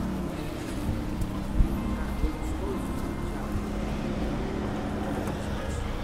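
Street traffic: a steady engine hum from passing vehicles, with a few light knocks.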